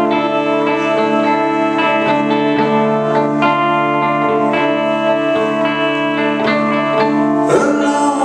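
Solo electric guitar played live through an amplifier: picked notes ring over a held low note, ending in a harder strummed attack just before the end.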